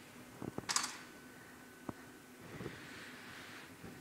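Low background noise of a glassblowing hot shop, with a few faint sharp clicks and a brief high hiss just before one second in.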